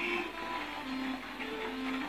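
Soft music from the anime episode's soundtrack: a few slow, held notes.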